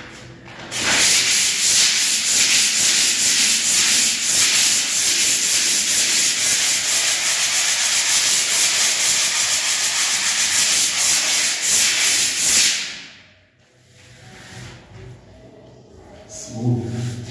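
Hand sanding of a cement-plastered wall with a hand-held block, scrubbed back and forth in quick strokes to smooth off its uneven surface. The scraping starts about a second in and dies away after about twelve seconds.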